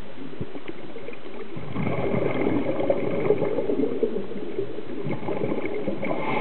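Underwater bubbling and gurgling water, muffled as if through a camera housing, swelling up about two seconds in and easing off near the end.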